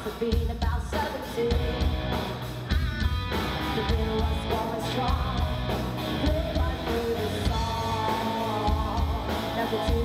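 Live rock band playing, a female lead singer singing into a handheld microphone over drums and electric guitar, with a steady beat.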